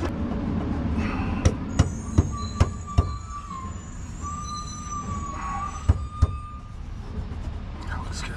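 Metal skid plate knocking against its mounting brackets as it is shifted into place under the vehicle: a run of sharp clanks, five in quick succession and two more later, over a steady low rumble. A thin, wavering high tone runs through the middle.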